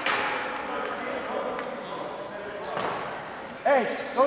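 Players' voices echoing in a gymnasium, with a sharp knock on the hard floor right at the start and another about three seconds in. A loud man's voice close by breaks in near the end.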